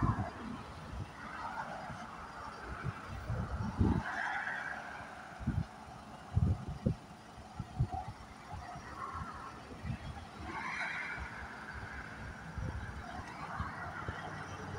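Wind buffeting the microphone over passing road traffic, with faint distant honks about four seconds in and again near eleven seconds.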